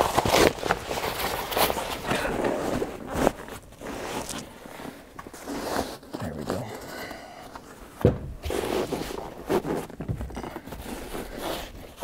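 Heavy nylon seat cover rustling and scraping as it is pulled and tugged over a utility vehicle's seat back, in irregular rasps, with a louder bump about eight seconds in.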